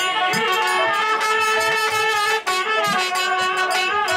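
Live folk instrumental music: a trumpet plays a melody of held, stepping notes over regular drum beats, with a brief break about two and a half seconds in.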